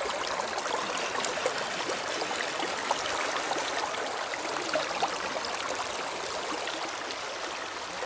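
Creek water rushing steadily through a Robinson sluice box and over its riffles, with a few faint ticks.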